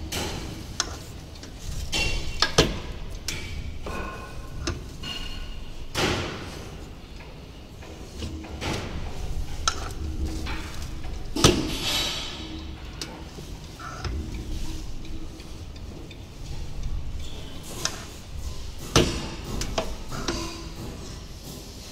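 Manual belt finger-punching machine worked by hand: irregular metal clunks and knocks as its lever and clamp bar are moved, with a few louder strikes about two and a half, eleven and a half and nineteen seconds in, and some brief metallic ringing.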